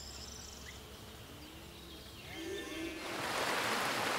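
Faint outdoor ambience with a few faint calls, then about three seconds in the steady rushing of a mountain stream over stones starts up.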